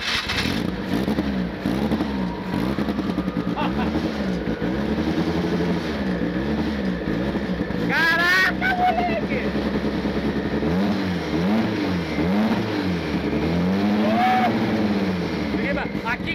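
Turbocharged engine of a 1500-horsepower drag-racing Chevette running just after being started, its revs rising and falling about once a second.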